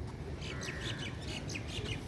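Small birds chirping in a quick run of short high calls, with a brief trill in the middle, over a steady low background rumble.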